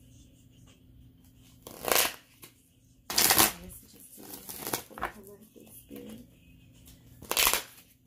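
A deck of oracle cards being riffle-shuffled by hand: three loud rushes of flicking cards, about two seconds in, a second later and near the end, with softer handling of the deck between them.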